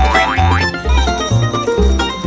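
Upbeat plucked-string background music with a steady bass beat, with a short rising cartoon sound effect laid over it at the start.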